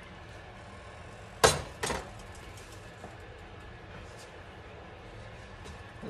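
Two sharp knocks of kitchenware being handled at the stove, about half a second apart and a second and a half in, over a faint steady hum.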